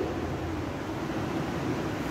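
Steady background hiss of room noise with no distinct sounds in it.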